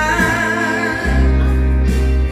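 A woman singing into an amplified microphone over a karaoke backing track. She holds one long, wavering note for about the first second, and a strong bass line comes in about a second in.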